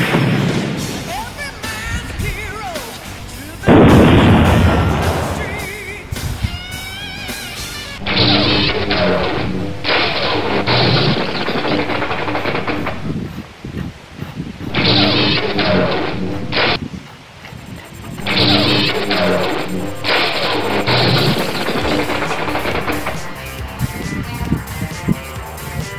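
Two loud blast sound effects, the first at the start and the second about four seconds in. From about eight seconds in, background music with a steady beat follows.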